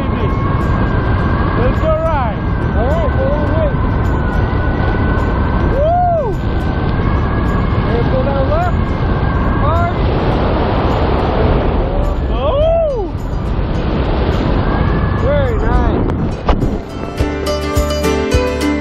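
Wind rushing over the camera microphone while gliding under an open parachute canopy, a loud steady rumble with short whistling tones that rise and fall now and then. Music with plucked strings comes in near the end.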